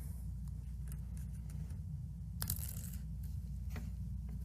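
Quiet room tone: a low steady hum with a few faint clicks, and one sharper tap about two and a half seconds in.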